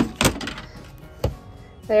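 Knocks of a freshly hacksawed piece of 3/4-inch PVC pipe being handled on the table: two quick knocks at the start and another about a second later.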